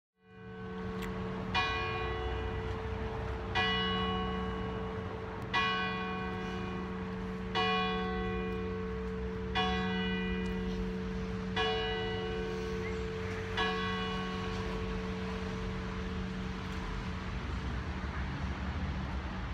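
A single church bell tolling seven times, a strike about every two seconds, its deep hum carrying on between the strikes and dying away after the last, over a low rumble of street traffic.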